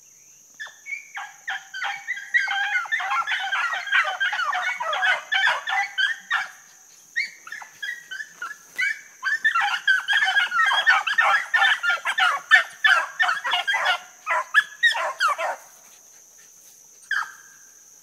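A pack of beagles baying on a rabbit's scent, many overlapping short chop barks coming in two long bursts with a short break between, then a single call near the end. A steady high trill of crickets runs underneath.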